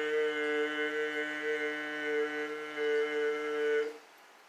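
A man's voice holding one long sung note, steady in pitch, that cuts off suddenly just before the end.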